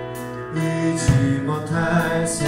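A church youth group singing a gospel song together into microphones, over a backing accompaniment, with sustained notes.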